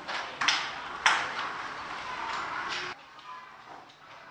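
Classroom clatter: a few sharp knocks of small objects on wooden school desks, about half a second and a second in, over a low background rustle; the sound cuts off suddenly about three seconds in.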